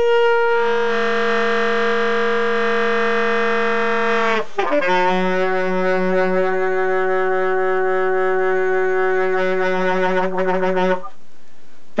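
Alto saxophone playing solo free improvisation: a long held note for about four seconds, then a slightly lower note held for about six seconds, stopping shortly before a new note starts at the very end.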